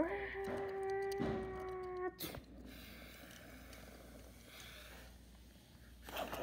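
A child's voice holding one steady high note for about two seconds, cut off by a sharp click, followed by faint rustling as a toy car is moved by hand.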